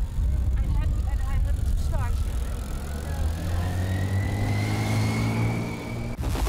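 A motor vehicle running close by on the street, with a low steady rumble. Its whine rises slowly in pitch over the last few seconds as it gathers speed, with snatches of voices from people on the street early on.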